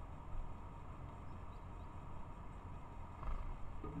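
Steady low outdoor rumble and hiss, with a couple of soft low bumps and a few faint, short high chirps about one and a half seconds in.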